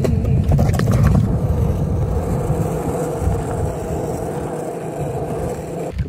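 Longboard wheels rolling over pavement: a steady low rumble with a faint hum.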